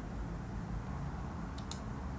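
Room tone with a steady low hum, and one short, faint high click near the end.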